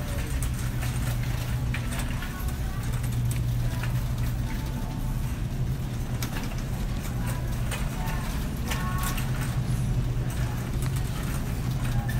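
Busy supermarket background: a steady low hum with faint voices of other shoppers about halfway through and again later, and scattered light clicks and rustles from the phone being handled while walking.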